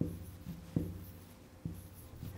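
Felt-tip marker writing digits on a whiteboard: a few short separate strokes and taps of the tip against the board.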